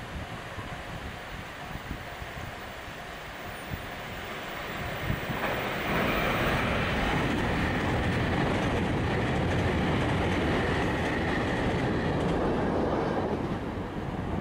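JR Kyushu 883 series electric limited express train passing close by, its wheels running on the rails. The sound builds from about five seconds in, stays loud and steady, and dies away near the end.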